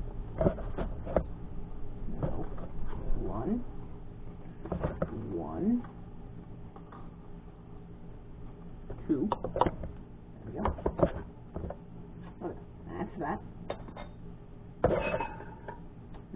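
Indistinct, muttered voice sounds, with occasional light clinks of measuring spoons and containers against a steel mixing bowl, over a steady low hum.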